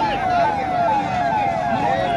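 Vehicle siren sounding a fast repeating falling yelp, about three downward sweeps a second, with voices in the background.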